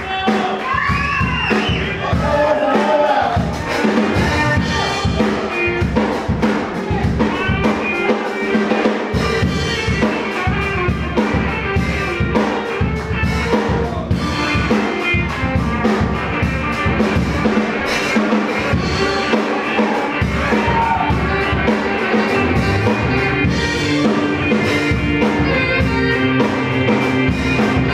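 Live band playing with saxophone, electric guitars, bass guitar and a drum kit keeping a steady beat.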